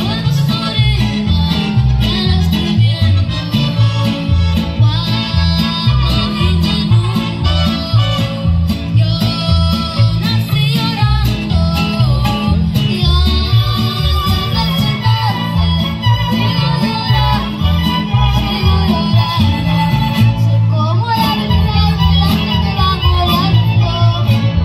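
A young girl singing live into a microphone over a recorded Latin American backing track, both through a PA system; the music runs continuously with a steady beat.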